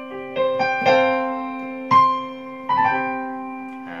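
Piano playing a short chord passage over a held low note, with about five struck chords and notes, each ringing and fading: a demonstration of suspended (sus) chords.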